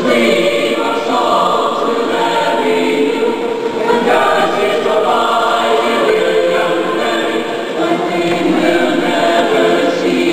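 Choir singing, many voices in held, overlapping notes.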